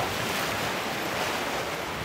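Steady rushing noise of sea waves and wind, with wind buffeting the microphone.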